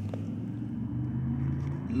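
A car engine idling: a steady low hum with a few held low tones.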